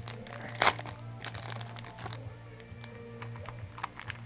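Thin clear plastic card sleeve crinkling and rustling as it is handled and a trading card is slid into it, with a dense run of crackles over the first couple of seconds that then thins to a few scattered clicks.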